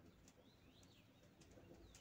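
Near silence with faint, high songbird chirps about half a second in, and a few faint ticks.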